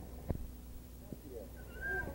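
Quiet stretch with a low steady hum, a few faint knocks, and a short high-pitched child's voice sound near the end.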